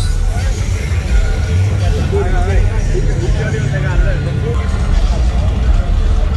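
Drag-racing muscle car engine running at low revs with a steady deep rumble as the car creeps toward the starting line after its burnout. Spectators talk over it.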